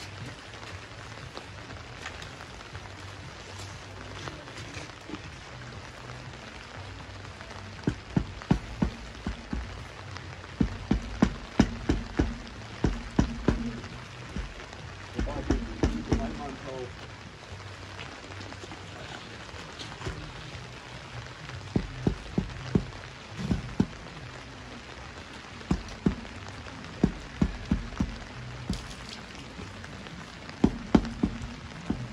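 Rubber mallet tapping a porcelain paving tile down onto its mortar bed in a recessed access-cover tray: bursts of quick, dull knocks, several taps at a time with short pauses between, beginning about a quarter of the way in.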